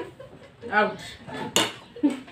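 Metal spoon clinking against a ceramic plate, with one sharp clink about a second and a half in.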